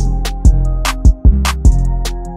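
Instrumental trap beat, 150 BPM in F minor: deep sustained bass notes under sharp drum hits about every 0.4 s, with hi-hat ticks and a held melodic line above.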